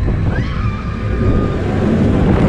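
MACK Rides Extreme Spinning Coaster car running fast along its steel track, heard on board: a loud, steady rumble of the wheels on the rails. About half a second in comes a short rising squeal, then a thin whine held for about a second.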